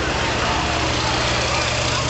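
Steady rushing background noise with a low, even hum under it.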